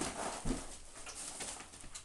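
Demolition knocks and scraping of wood and debris, with a sharp knock at the start and another about half a second in.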